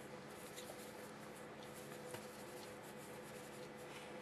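Faint, scratchy strokes of a watercolour brush working over wet paper, repeated irregularly, over a steady electrical hum.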